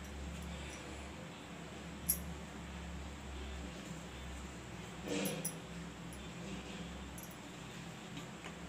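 Light handling sounds as wheat-flour momos are set into the cups of an aluminium steamer plate: a sharp click about two seconds in and a brief louder knock just after five seconds, over a steady low hum.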